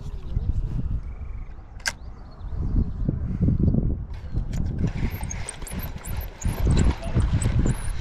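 Wind rumbling and buffeting on the microphone, with a spinning reel being cranked in the second half and one sharp click about two seconds in.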